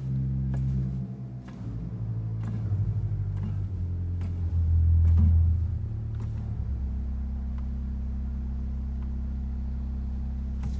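Bottom octave of the 16-foot wooden diapason pipes in an Aeolian-Skinner pipe organ's pedal division, played on the pedals. Deep held bass notes change every second or so at first, are loudest about five seconds in, then settle into one low note held for the last few seconds. A few light clicks sound over the notes.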